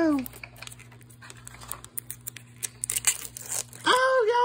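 Thin plastic wrapper being torn and crinkled off a Mini Brands toy capsule, in a quick, irregular run of crackles.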